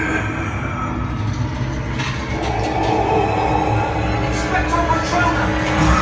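Steady low rumble of a theme-park train ride car, with the ride's eerie soundtrack of music and sound effects playing over it and scattered clicks and knocks.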